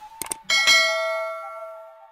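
A couple of quick mouse-click sounds, then a bright bell ding about half a second in that rings out and fades over about a second and a half, pulsing as it dies away: a notification-bell sound effect.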